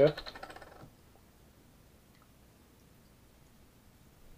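A few faint, scattered clicks as the screw cap is twisted off a glass vodka bottle, otherwise near silence.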